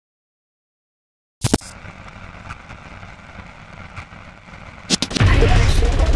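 Explosion sound effect. After a second and a half of silence come two sharp cracks and a faint steady hiss. About five seconds in there are two more cracks, then a loud, low boom that carries on.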